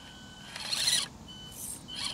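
Axial SCX24 micro RC crawler's small electric motor and gears whining thinly and steadily as it crawls up a rock, with a short scrape of tyres or chassis on the rock about a third of the way in.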